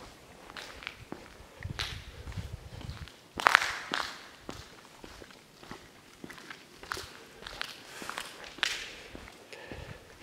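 Footsteps of a person walking across a tiled floor strewn with debris, roughly a step a second, with a louder sharp crunch or knock about three and a half seconds in.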